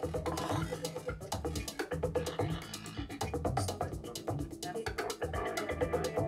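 Live electronic music from a table of electronic gear: dense, rapid clicking textures over low thuds about once a second and held mid-pitched tones.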